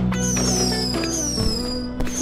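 Fireworks heard over background music: two high whistles that fall slowly in pitch, one just after the start and one about a second in, with a sharp bang in between.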